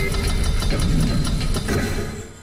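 Cinematic title-intro sound effect: a loud, dense rumble with rapid crackling ticks over it, dropping away at the end.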